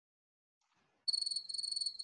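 Cricket chirping sound effect: a high-pitched chirring in trills about half a second long, starting about a second in after dead silence. It is the stock 'crickets' gag for an awkward silence.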